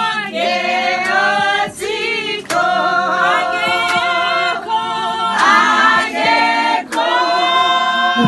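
A small group of women singing a hymn unaccompanied, several voices holding and gliding between long notes.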